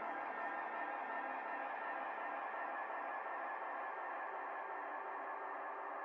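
Quiet electronic music with no beat: a sustained synth pad of many held tones, slowly getting quieter.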